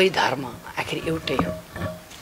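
A man speaking into interview microphones, softer in the middle of the stretch, with short pauses between phrases.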